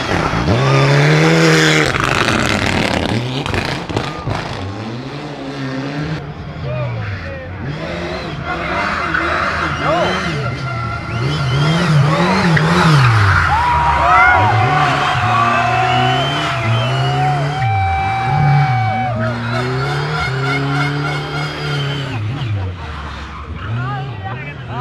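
Rally cars driven hard through a tight bend: engines revving up and dropping back again and again through gear changes, with tyres squealing around the middle.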